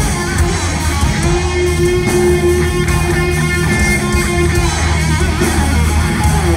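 Heavy metal band playing live, heard from the audience: an electric guitar lead holds one long sustained note from about a second in until near the five-second mark, over bass and drums.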